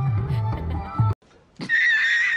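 Music with a steady beat cuts off suddenly about a second in. After a brief silence, a high, wavering horse whinny starts near the end.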